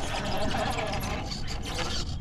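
Redcat Ascent RC rock crawler's electric motor and gears whining faintly as it climbs a rock ledge, with scattered short scrapes and ticks of its tires on the stone.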